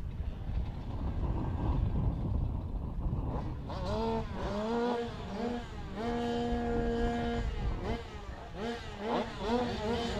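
Several 85cc two-stroke speedway bike engines at the start gate: a low rumble at first, then the riders blip their throttles in short rising-and-falling revs. One rev is held steady for about a second and a half in the middle, and the blipping resumes near the end.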